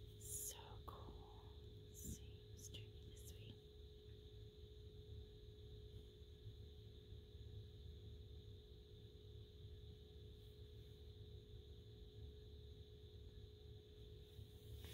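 Near silence: faint steady hum of room tone, with a few soft clicks in the first few seconds.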